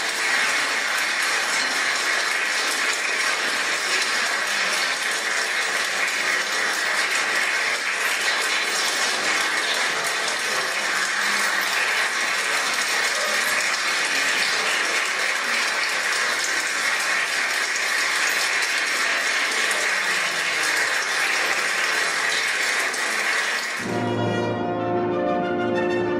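Large audience applauding, a dense, steady clapping of many hands.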